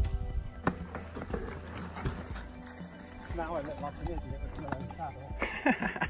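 Wind rumbling on the microphone, with scattered clicks and rattles from mountain bikes on a stony grass track, over steady background music. A faint voice comes in about halfway through.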